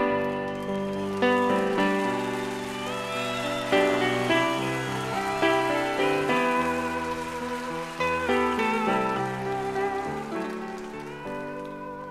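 Instrumental break of a 1970s live soft-rock song played from a vinyl LP: piano chords with guitar, including notes that slide in pitch.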